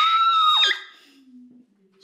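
A young woman's high-pitched shriek, held on one steady note, cutting off under a second in.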